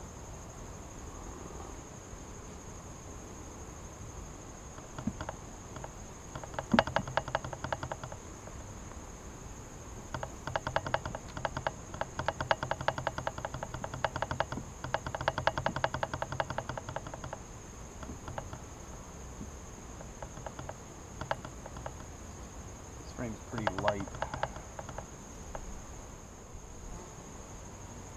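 A steady, high-pitched insect trill, typical of crickets, with honey bees buzzing close by in three stretches: about six seconds in, a longer spell from about ten to seventeen seconds, and again near the end.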